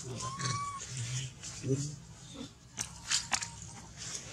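A macaque chewing food, with sharp crunchy clicks in the second half. A short high squeak comes early on, and brief low voice sounds follow.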